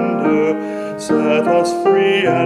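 Slow sung hymn with piano accompaniment: sustained piano chords under a voice holding long notes, changing chord about every half second.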